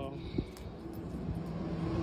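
Street traffic: a motor vehicle's engine rumble growing steadily louder as it approaches, with one short click about half a second in.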